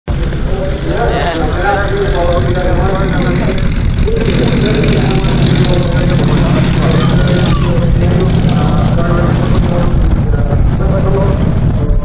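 Martin Mars flying boat passing overhead, its four radial piston engines making a steady low drone, with people's voices talking over it.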